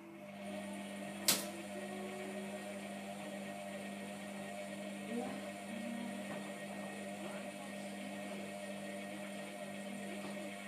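Hotpoint Aquarius WMF720 washing machine's wash motor starting up and running with a steady hum as the drum tumbles the wet load. There is a single sharp click about a second in.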